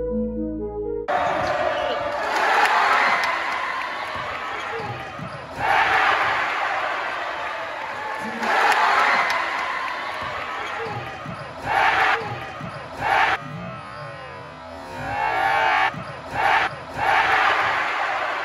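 Synth intro music cuts off about a second in. Live basketball-game sound from a packed high-school gym follows: basketball bouncing and steady crowd noise, with the crowd rising in loud swells and several short loud bursts over the last six seconds.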